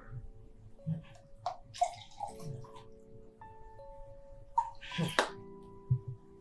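Liquid poured from a plastic bottle into a drinking glass, splashing in short bursts, over soft sustained background music. A brief 'uh-huh' comes near the end.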